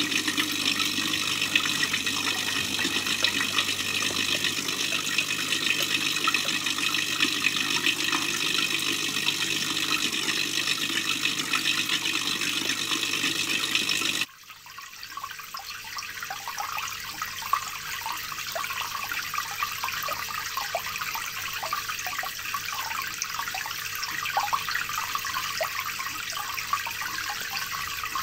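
Water running steadily in an aquarium water change for about fourteen seconds, then an abrupt cut to a quieter stretch of irregular gurgling and splashing that slowly grows louder.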